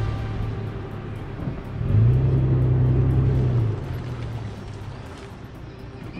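Four-wheel-drive SUV engine at low speed on a trail. About two seconds in it is given throttle and runs louder and a little higher for under two seconds, then eases back to a lower idle-like hum.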